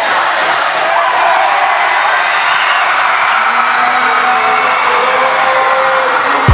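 A crowd cheering and screaming in a gymnasium as a basketball game is won, many voices at once, loud and unbroken.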